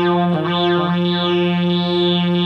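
Waldorf Rocket analog synthesizer holding a steady, buzzy drone on one low note through a digital delay, its upper tones sweeping up and down in repeated arcs. There is a brief dip about a third of a second in.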